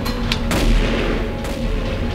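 Gunshots, a few sharp cracks with a reverberant tail, the loudest about half a second in and another about a second later, over background music.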